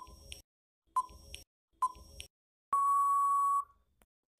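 Quiz countdown-timer sound effect: a clock-like tick-tock about once a second, three times, then one steady beep lasting about a second as the time runs out.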